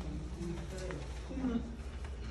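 Short, low-pitched murmured voice sounds, coo-like, over a steady low hum in a quiet classroom.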